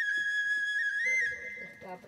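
Background music: a flute holds one long high note, lifting briefly about a second in and then ending, as lower instrument notes take over.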